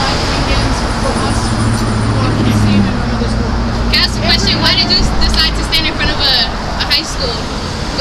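Road traffic with a vehicle engine running as a steady low rumble, under nearby voices talking.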